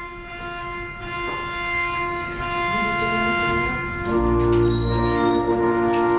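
Organ music with long held chords, growing louder; a deep bass line comes in about four seconds in.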